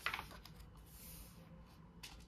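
A photobook page turned by hand: a short crisp paper flap at the start, then a soft rustle of the page settling about a second in.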